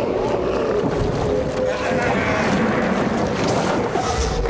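Loud, steady rushing wind, as in a storm sound effect, with faint wavering tones under it.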